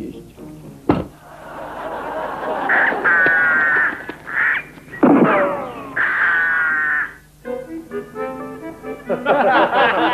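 Television ad-break jingle: a sharp thump about a second in, then music with warbling, squawk-like electronic tones and falling swoops. Near the end it thins to a few separate keyboard notes before other music starts.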